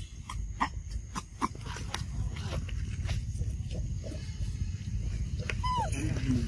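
Macaques calling: short squeaks and clicks in the first few seconds, then one longer arching call near the end, over a low rumble.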